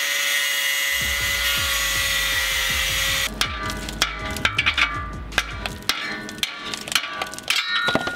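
An angle grinder cutting at a car's exhaust flange, a steady, loud grind that stops after about three seconds. Music with a bass line comes in about a second in and carries on after the grinder stops, with sharp percussive hits.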